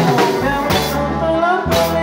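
Marimba orchestra playing live: marimbas and electric keyboard over a drum kit and congas, with two strong drum strokes about a second apart.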